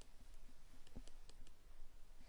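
Faint, irregular clicks and taps of a stylus on a tablet as a word is handwritten, about half a dozen light ticks.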